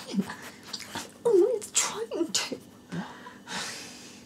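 Short voice sounds with no clear words, then a breathy hiss like an exhaled breath near the end.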